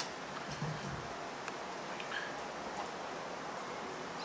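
A single sharp click as the steel hook is worked in the pliers, then a few faint ticks of small metal parts being handled over steady room hiss.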